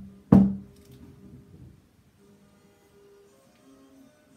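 A hollow wooden knock with a short ring about a third of a second in, with a lighter knock just before it: the body of a stringed instrument, wet with its first coat of oil varnish, bumping as it is set down on the wooden workbench. Faint music with held notes follows.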